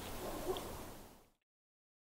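Faint outdoor background ambience with a soft low sound about half a second in, fading out to silence a little past a second.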